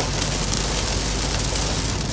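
Heavy rain pelting the roof and windshield of a moving car, heard from inside the cabin: a steady, dense hiss with a low road rumble underneath.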